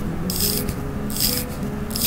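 Crown of a Seiko Presage Cocktail automatic watch being turned by hand to wind the mainspring: a short, raspy ratcheting of the winding mechanism with each twist of the fingers, about once a second.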